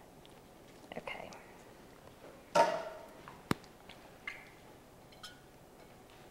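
Soft sounds of a utensil mixing food in a glass bowl, with a brief voice sound about halfway through and one sharp click of the utensil a second later.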